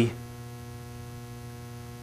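Steady electrical mains hum with a faint hiss underneath.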